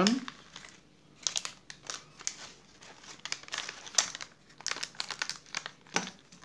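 Plastic packaging of a piston ring set crinkling in irregular bursts as gloved hands handle the packet.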